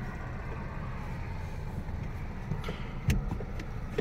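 Low, steady rumble of a car heard from inside the cabin, with a short knock about three seconds in.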